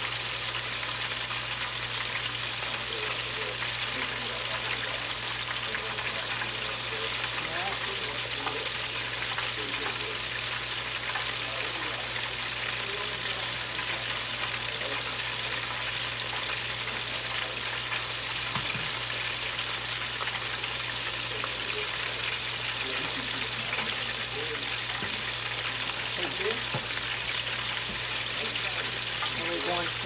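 Food deep-frying in hot oil in a Farberware electric deep fryer: a steady sizzle.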